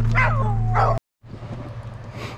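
Sled dogs yipping and whining in short rising and falling cries over a loud steady low hum; the sound cuts off abruptly about halfway through.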